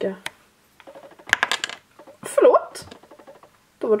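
A quick cluster of small plastic clicks as a pressed eyeshadow pan pops loose from a plastic ColourPop palette, followed by a short vocal exclamation.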